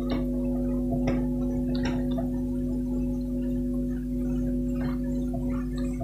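A steady hum of several held tones, with a few short rubbing strokes from a duster wiping marker off a whiteboard.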